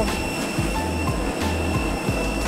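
Steady jet airliner noise on the apron at an open cabin door: a continuous rush with a constant high whine over a low rumble.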